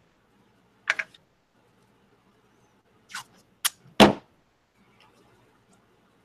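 A few short knocks and clicks from a steel rule and a wood scrap spacer being handled on a cutting mat, the loudest a thunk about four seconds in.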